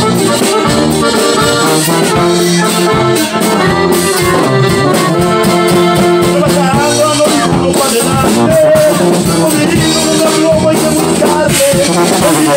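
Live norteño conjunto music: a button accordion plays the melody over tuba bass and guitar in a steady, loud dance rhythm.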